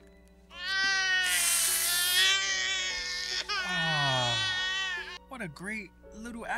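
A toddler's long, shrill scream from a horror film soundtrack that slides steadily down in pitch into a low, warped groan, over a sustained music drone.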